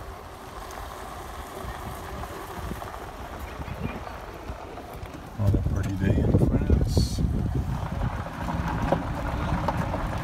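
Electric golf cart riding over a gravel path: a low rumble of tyres on gravel mixed with wind buffeting the microphone. The rumble jumps suddenly louder about five and a half seconds in.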